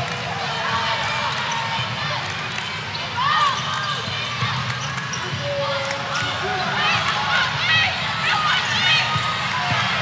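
Basketball arena ambience: a steady crowd murmur with scattered voices calling out, and a basketball being dribbled on the hardwood court.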